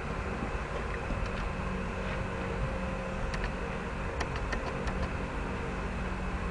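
Steady background noise, a low hum under an even hiss, with a few faint clicks.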